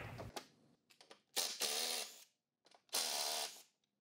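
Ratchet wrench with a 10 mm socket backing out a bolt. It gives two bursts of rapid ratcheting, each under a second, with a few light clicks between them.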